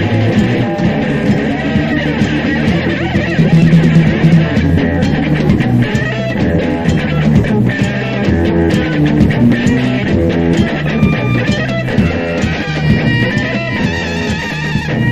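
Post-punk band playing live, guitar to the fore, on a rough, badly recorded live tape.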